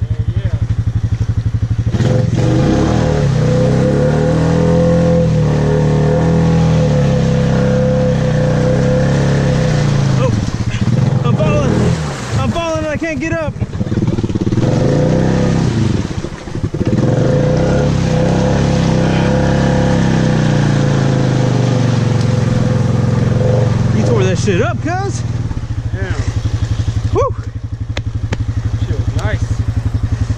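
Four-wheeler ATV engine revving up and down over and over as the quad is driven through mud and standing water, its pitch rising and falling with the throttle, with mud and water splashing against the machine.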